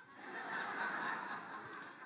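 Congregation laughing together at a joke, swelling to a peak about a second in and dying away.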